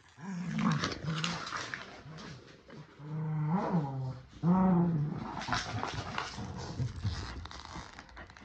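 A Boston terrier and a keeshond growling in play as they pull against each other in tug-of-war over a plush toy, the growls coming in short runs. Two longer, louder growls come about three and four and a half seconds in, with scuffling noise between them.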